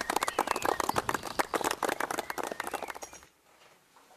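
A small crowd applauding with dense, irregular hand claps, cut off abruptly after about three seconds.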